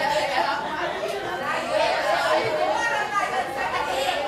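Several people talking over one another in a large room, a lively group chatter with no single clear voice.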